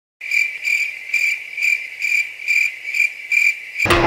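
Cricket chirping sound effect laid over silenced audio: a steady high chirp pulsing a little over twice a second, starting after a moment of dead silence and stopping just before the end.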